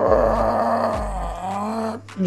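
A long, rough vocal cry like a roar or groan, held for about two seconds, its pitch dipping in the middle. It is a dubbed fight sound effect.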